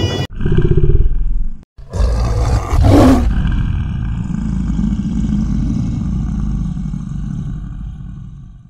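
Intro sound effects: a deep growling roar, a brief break, then a loud whooshing hit about three seconds in, followed by a long low rumble that slowly fades away.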